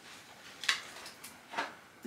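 Two brief swishes of fabric, about a second apart, as a dress is gathered up in the hands, against faint room tone.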